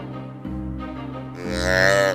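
Over steady background music, a single loud bleat about one and a half seconds in, lasting under a second and dropping slightly in pitch at its end. It is blown on a tube deer call as a doe bleat, imitating a doe in estrus.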